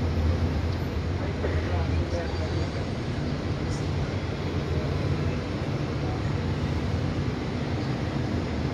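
City street ambience: a steady low rumble of road traffic, with faint voices of passers-by in the first couple of seconds.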